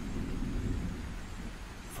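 Heavy tropical rain pouring down with a low, continuous rumble of thunder, easing off slightly in level over the two seconds.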